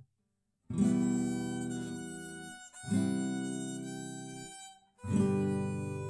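Acoustic guitar chords, struck once each and left to ring, three in a row about two seconds apart, after a short silence at the start.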